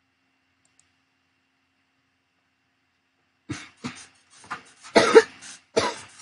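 A person coughing: a short run of irregular coughs after about three and a half seconds of silence, the loudest a little before the end.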